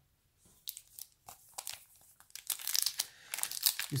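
Plastic trading-card pack wrapper crinkling as it is picked up and worked open: a few scattered crackles at first, growing denser about halfway through.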